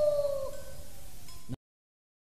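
A voice imitating a dog's howl: one long drawn-out howl that slides slowly down in pitch and fades, then cuts off abruptly into silence about a second and a half in.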